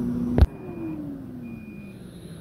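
Air fryer's end-of-cooking beeps, short high tones about once a second, as its fan winds down with a falling hum. A sharp click comes about half a second in, ending a steady hum.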